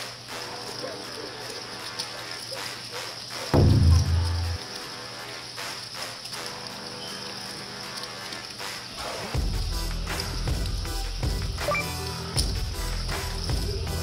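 Edited background music over a steady high hiss of poker-room noise. A deep, loud, descending hit sounds about three and a half seconds in and lasts about a second. A bass-heavy music track comes in about nine seconds in.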